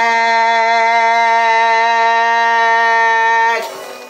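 A young man singing one long held note unaccompanied, with a slight vibrato, that ends about three and a half seconds in.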